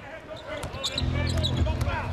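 Basketball being dribbled on a hardwood court as it is brought up the floor, a bounce with each stride.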